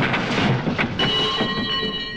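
Crashing, clattering tumble of a person falling down stairs, a dense run of knocks and bangs, ending about a second in with a metallic clang that keeps ringing.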